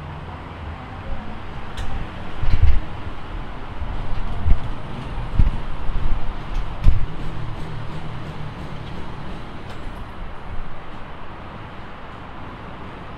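A few dull thumps and sharp clicks from handling the motorcycle's seat and storage compartment, four thumps spread over several seconds, over a steady background hum.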